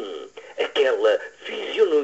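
Speech: a voice reciting a poem in Portuguese, in short phrases.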